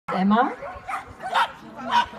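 A dog barking, several short barks spaced about half a second apart, with a voice briefly at the start.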